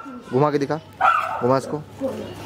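Gaddi mastiff puppy whining with a high, thin yelp about a second in, over brief snatches of a man's voice.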